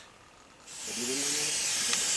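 Aerosol can of blue antiseptic spray hissing in one long burst that starts just under a second in, as it is sprayed onto an elephant's hide.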